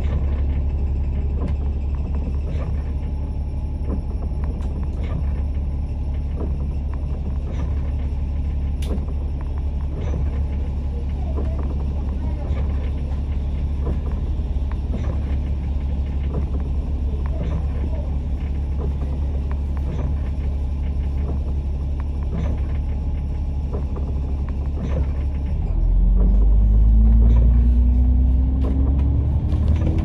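Alexander Dennis Enviro500 MMC double-decker bus engine idling with a steady low rumble, heard from inside the upper deck while the bus stands at a red light. Near the end it gets louder and a rising whine sets in as the bus accelerates away.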